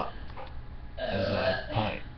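A man burps loudly, one long belch of just under a second starting about a second in, after a short spoken "uh".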